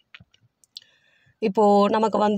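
A few faint clicks in a pause, then a woman's voice speaking loudly from about one and a half seconds in, holding a drawn-out vowel.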